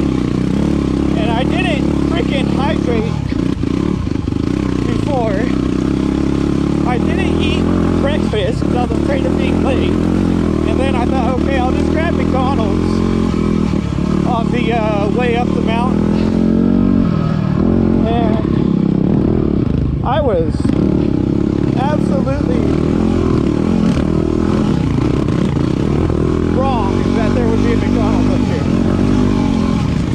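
Yamaha WR250R's single-cylinder four-stroke engine running under load on a rocky climb, its revs rising and falling as the throttle is worked.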